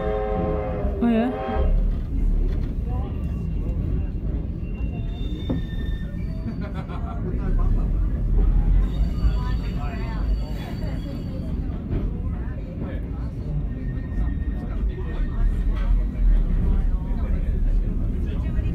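Heritage train passenger carriage rolling slowly over the track, a steady low rumble with a few faint, brief high-pitched squeals.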